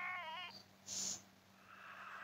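A character's high, wavering, whining voice from the anime episode, crying out and ending about half a second in, followed by a short hiss about a second in.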